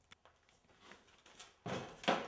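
Plaster investment mold for glass casting being lifted and handled: a few faint knocks, then a louder rough noise lasting about half a second near the end.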